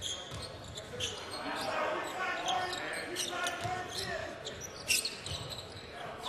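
Basketball in play on a hardwood court: a ball bounces with a few sharp thuds, the loudest about five seconds in, over the steady murmur and voices of an arena crowd.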